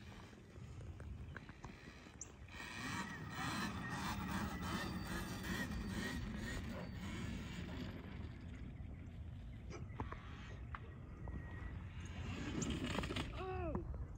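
Faint sound of a Talaria Sting R electric dirt bike being ridden across a grass field at a distance, its motor and tyres heard under a rumble of wind on the microphone. A voice, a shout or a laugh, comes in near the end as the bike goes down.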